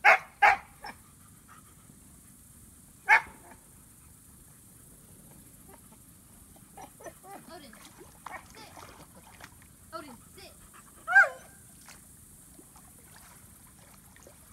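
A dog barking in a few short, sharp barks: two in quick succession at the start, one about three seconds in, and one more about eleven seconds in.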